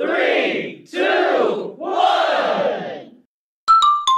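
A group of children's voices shouting together in unison: three long calls, each rising and falling in pitch. After a short pause a chiming tune begins near the end.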